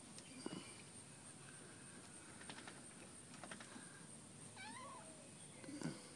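One faint, short animal call that rises and then falls in pitch about four and a half seconds in, with a few faint knocks and a louder thump near the end.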